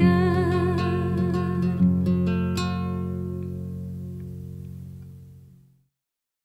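End of an acoustic folk song: a held sung note with vibrato dies away in the first second, the acoustic guitar is strummed twice more, and the last chord rings out and fades to silence near the end.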